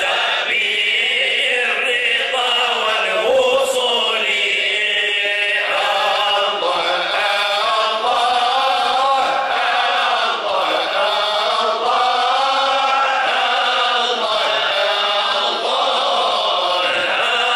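A group of men chanting Sufi dhikr verses together, led through microphones, in a melodic line that rises and falls without break.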